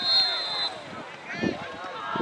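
A referee's whistle sounding one steady high blast lasting under a second at the start, over shouting players and spectators.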